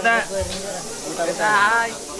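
Voices of people in a crowd: two short bursts of talk, about a second and a half apart, over a steady hiss of background noise.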